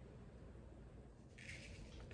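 Near silence: faint room tone, with a brief, faint scrape of a plastic sugar container's lid being taken off near the end.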